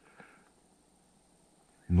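Near silence, with a faint brief sound in the first half-second; a man's voice begins right at the end.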